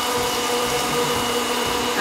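Electric countertop blender motor running steadily on speed 3, a constant hum, while salad oil is drizzled in to emulsify the dressing.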